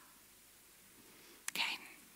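Near-silent room tone, then about a second and a half in a sharp mouth click and a short breathy intake of breath from a woman.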